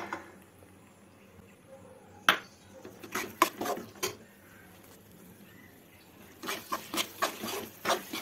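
A steel spoon stirs and presses a thick chana dal laddu mixture in a nonstick pan. The spoon knocks and scrapes against the pan in scattered clicks: one sharp knock about two seconds in, a short cluster a second later, and a quicker run of clicks near the end.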